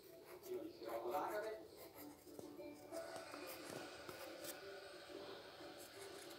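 A man's voice mumbling quietly and briefly about a second in, with no clear words. Then comes a faint background with a few held tones.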